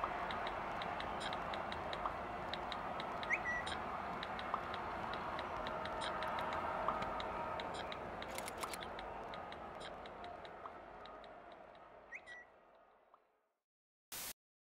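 Smartphone touchscreen taps, a scatter of light ticks, over a steady hiss, with two short rising message chirps, one a few seconds in and one near the end, before it all fades out.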